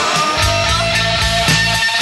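Instrumental passage of a rock song: held notes over a steady drum beat, with no singing.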